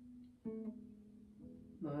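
Acoustic guitar picked one note at a time: a held note rings on, then a new note is plucked about half a second in and left to ring.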